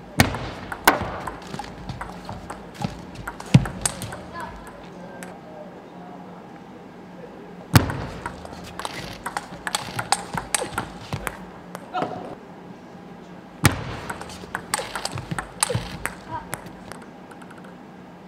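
Table tennis ball clicking back and forth off the bats and the table in quick rallies, in several bursts with short pauses between points.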